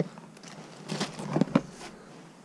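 Parcels being handled: rustling of packaging and a few light knocks, mostly in the second half.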